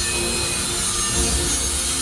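Angle grinder fitted with a Norton Blaze Rapid Strip stripping disc, running steadily while its face scrubs along the edge of a soft-metal bar to deburr it.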